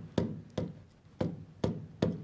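Stylus tapping on the glass of a touchscreen display while letters are handwritten: four sharp, separate taps.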